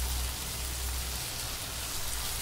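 Diced bottle gourd sizzling steadily in oil in a non-stick pan as it is stirred with a silicone spatula, cooking on a low flame at the stage where the oil has separated out.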